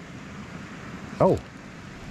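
Steady, even rushing background noise. About a second in, a man gives one short exclamation, "oh".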